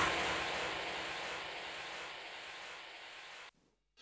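Tail of a TV programme's electronic ident: a hissing whoosh fading away steadily, cut off to dead silence about three and a half seconds in.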